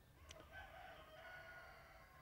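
A rooster crowing faintly, one drawn-out call about a second and a half long.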